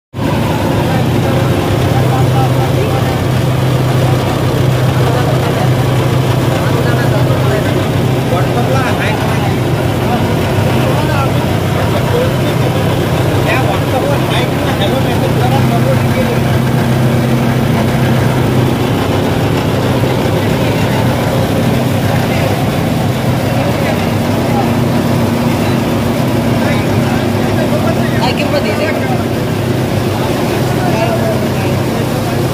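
Mini dal mill running steadily, its electric motor giving a constant loud hum, with a second, higher hum joining about halfway through.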